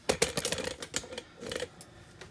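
A quick run of light clicks and knocks from handling, thinning out about a second and a half in.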